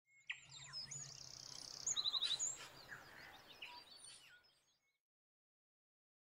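Forest birdsong: several birds chirping and whistling, with a fast high trill about a second in and a quick run of notes about two seconds in. It fades out about five seconds in.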